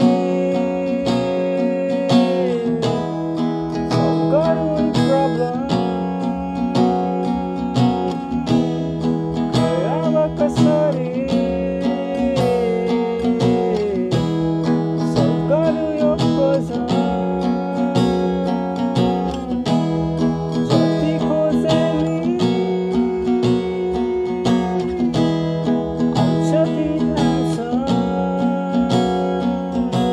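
Steel-string acoustic guitar with a capo, strummed in a steady down-up pattern through a C–D–G chord progression. A higher melody line with pitch bends runs over the chords.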